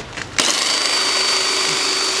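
Drill-powered Quick Cut Greens Harvester cutting mustard greens: the motor starts suddenly, rises briefly to speed, then runs steadily with a high whine over a loud hiss of spinning and cutting.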